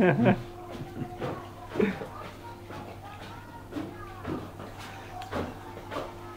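Indistinct voices talking in a small room, loudest briefly at the start and again about two seconds in, over a steady low hum.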